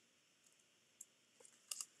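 Near silence, with a few faint clicks about a second in and near the end as two layered cardstock daisies stuck together with a foam adhesive dot are gently pulled apart.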